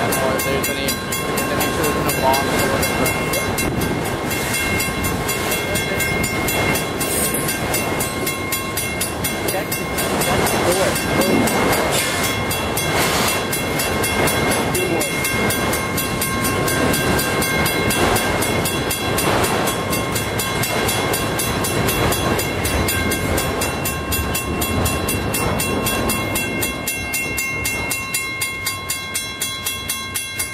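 A freight train of autorack cars rolling past close by: a steady rumble of wheels on rail with a thin, steady high ringing over it. Near the end the last cars go by, and the sound thins into a regular clicking of about two beats a second.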